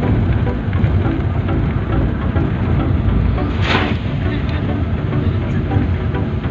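Steady low rumble of engine and road noise inside a vehicle's cabin while driving on a wet road in the rain, with a brief swish a little past halfway.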